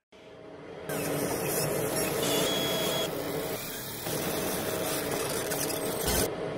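Cinematic logo-reveal sound design: a swell that builds over the first second, then a dense, steady rumbling drone with held tones, a hit near the end, then fading away.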